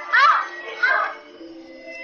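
A woman's two short high-pitched cries, each well under half a second, one right at the start and one about a second in, over sustained background music.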